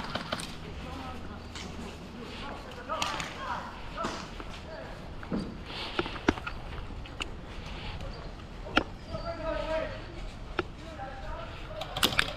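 Airsoft game field sound: faint voices of other players calling out, with scattered single sharp snaps of airsoft shots or BB hits, about eight over the stretch.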